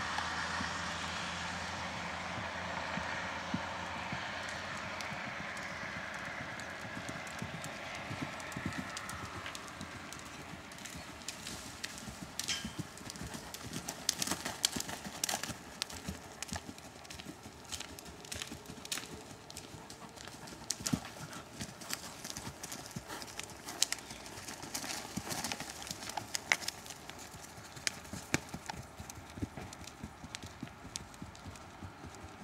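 A ridden horse's hoofbeats on soft arena footing, an irregular run of dull thuds that grows more distinct from about a third of the way in. Under the first stretch a steady rumble, likely a passing vehicle, fades away.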